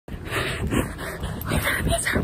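A woman laughing in short, breathy puffs.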